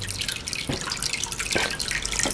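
Water dripping and trickling into an aquarium as a jar of small fish is emptied into the tank, with two sharper drips, one under a second in and one about a second and a half in.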